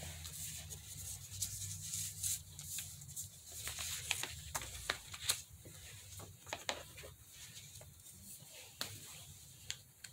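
Hands handling paper and an envelope on a table, with a jacket sleeve rustling: scattered small taps and rustles over a low steady hum.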